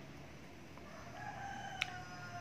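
A rooster crowing faintly: one long drawn-out call begins about halfway through, its pitch sagging slightly. A sharp click comes near the end.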